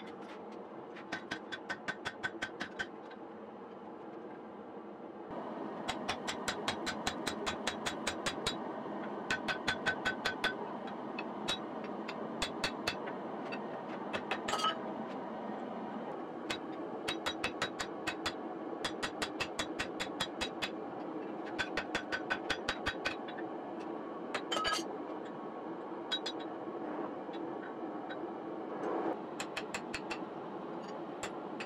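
Runs of rapid hammer blows, about five a second, on a steel drift being driven through the eye of a red-hot axe head on the anvil, some blows with a short ring. A steady rushing noise, the gas forge running, goes on underneath and grows louder about five seconds in.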